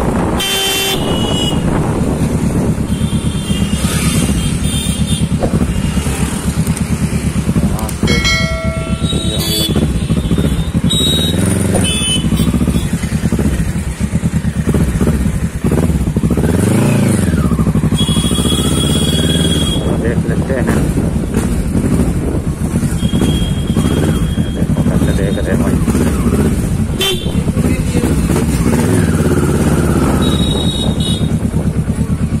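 Kawasaki Ninja 650R's parallel-twin engine running at low speed through traffic, with one rev that rises and falls about halfway through. Vehicle horns honk a few times: about a second in, around eight to nine seconds in, and again near two-thirds of the way.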